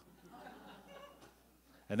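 Faint, brief laughter from the audience in a lecture room.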